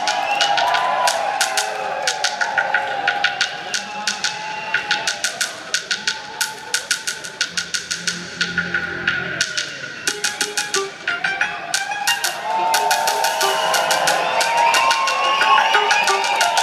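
Live electronic music played on synthesizers: a fast run of sharp, clicking electronic beats at about four a second over wavering, gliding synth tones. The clicks thin out briefly past the middle, then the gliding tones grow busier near the end.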